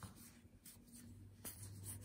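Faint rustle and a few soft flicks of stiff printed game cards being slid one past another in the hand.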